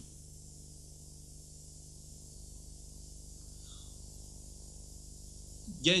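Steady low hiss and electrical hum from an old broadcast recording, with no crowd or game sound standing out.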